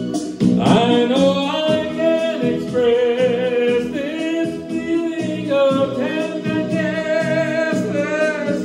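A man singing into a handheld microphone over recorded musical accompaniment, coming in about half a second in and holding long, drawn-out notes.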